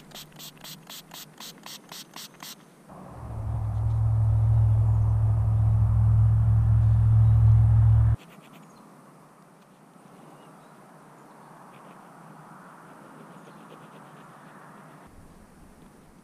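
Small pump spray bottle squirted about ten times in quick succession, roughly four sprays a second, wetting a freshly dug coin to loosen the dirt. Then a loud low rumble for about five seconds that stops abruptly.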